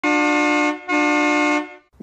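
Diesel locomotive horn giving two blasts, each about two-thirds of a second, holding a steady two-note chord.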